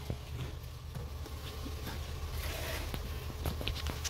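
Steady low hum of the Nissan Tiida's engine idling, with scattered light clicks and rustles as the test-light wiring under the dashboard is handled.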